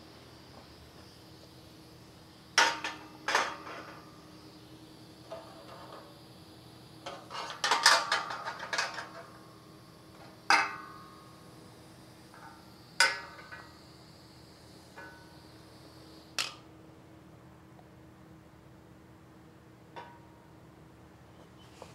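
Aluminium tubing and metal frame parts clanking together in a series of sharp metallic knocks with brief ringing, several in quick succession about halfway through, as a tube is handled and set in place on the frame. A steady low shop hum runs underneath.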